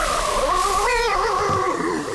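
A monstrous creature's long howl that wavers in pitch, with a stronger wobble about a second in.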